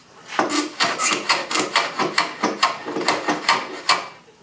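A hand tool scraping back and forth across a piece of wooden trim, about five quick strokes a second, starting a moment in and stopping just before the end.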